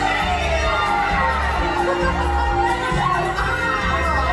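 A stage ensemble shouting and cheering together over loud band music.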